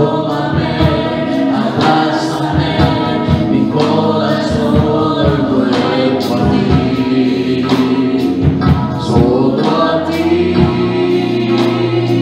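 Gospel worship song sung live: a woman's lead voice through a microphone over instrumental accompaniment with a steady drum beat.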